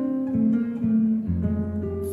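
Acoustic guitar plucking soft chords in a slow bossa nova ballad, with bass notes underneath; a deeper bass note comes in near the end.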